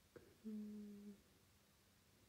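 A woman's short closed-mouth hum, a flat 'mm' of acknowledgement, held for under a second about half a second in, after a soft click. Otherwise near silence.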